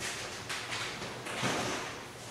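Classroom room noise: a few soft knocks and rustles as people move about at the end of a class.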